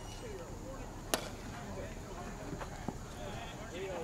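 A baseball bat hitting a ball, one sharp crack about a second in, followed by two fainter knocks, over distant voices across the field.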